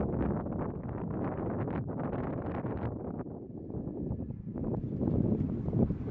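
Wind buffeting the microphone: a rough, gusty rumble that swells again near the end.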